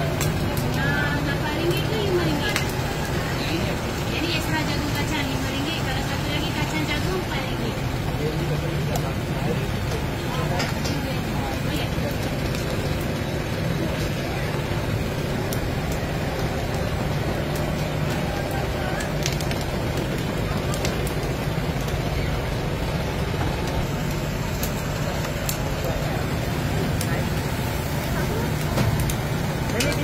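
Busy street-stall ambience: indistinct background chatter over a constant low hum and hiss, with scattered light clicks.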